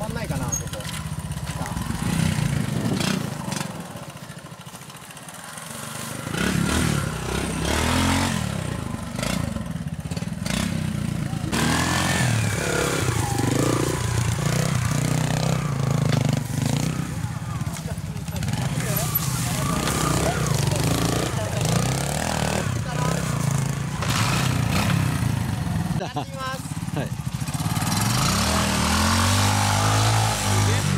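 Twin-shock trials motorcycle engines revving up and down in short bursts as they climb a steep dirt section. The sound eases off briefly a few seconds in, then runs on with voices nearby.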